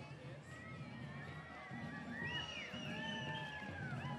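Samba group's parade music, faint, with long high tones gliding up and down over a low, steady drumming.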